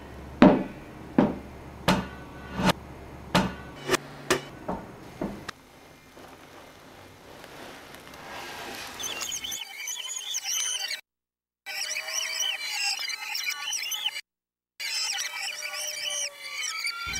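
A large rubber exercise ball bouncing on the floor: a run of sharp thuds about every 0.7 s over a low hum, quickening and then stopping about five seconds in. Later comes a busy stream of high chirping sounds over a steady tone, cut off suddenly twice for a moment.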